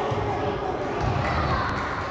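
Indistinct voices of players and spectators echoing in an indoor sports hall during a futsal match, with the thud of the ball bouncing and being kicked on the hard court.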